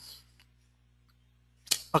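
Near-silent pause in speech: a drawn-out 'um' trails off at the start, then a single sharp click comes shortly before the voice returns.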